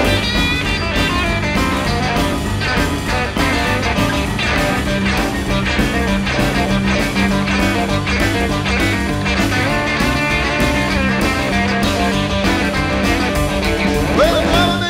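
Instrumental break in an up-tempo rockabilly song: a full band playing over a steady driving beat, with no vocals.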